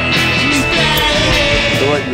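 Rock music, loud and steady.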